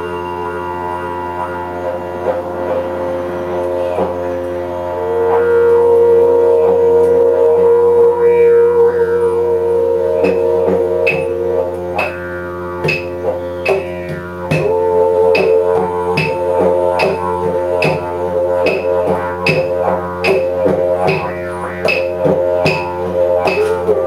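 Didgeridoo playing a steady low drone with shifting overtones, with a louder, higher tone held over it from about five seconds in. From about ten seconds in, a light percussive tap keeps an even beat of roughly three strikes every two seconds.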